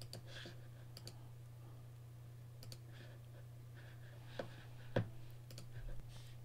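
Scattered clicks and key taps of a computer mouse and keyboard, about half a dozen sharp clicks spread over a few seconds, above a faint steady low hum.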